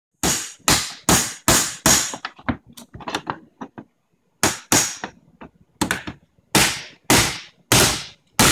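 Hammer blows on the metal case and drive mount of a desktop computer, knocking its hard disk drive loose. A quick run of five hard blows, then lighter taps, a short pause about four seconds in, and more hard blows about half a second apart.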